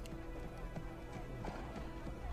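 Faint horse hooves clip-clopping on a dirt street over soft background music. This is the TV episode's soundtrack, played quietly.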